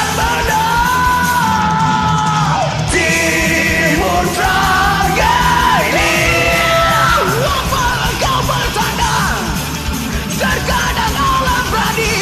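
Karaoke duet: two male singers belting a power metal song in long, high held lines over a recorded metal backing track.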